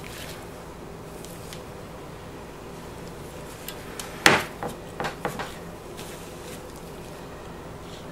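Wood knocks at a homemade wooden wire soap cutter as a soap bar is set in place and the cutter's arm is worked: one sharp knock about four seconds in, then a few lighter clicks, over a steady low hum.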